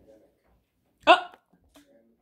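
A voice lets out one short, loud, high-pitched exclamation, "Oh!", about a second in. Before and after it there is only faint murmuring.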